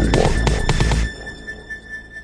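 Electronic dance music from a trance/techno DJ mix: a heavy kick drum and bass that cut out about a second in, leaving a thin, steady high synth tone and a few sparse electronic notes, a breakdown in the track.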